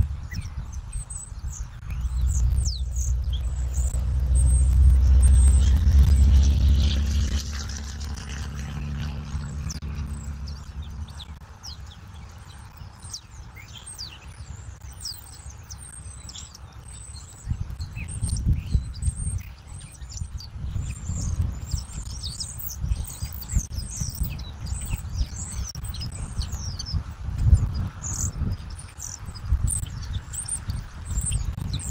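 Small songbirds chirping repeatedly with short, high, falling notes, more densely in the second half. A low rumble swells about two seconds in, is loudest around five seconds, and fades out by about eleven seconds; irregular low rumbling returns later.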